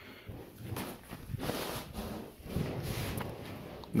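Soft, irregular scuffing and rustling of an inflatable boat being hauled up by a grab handle on its side tube.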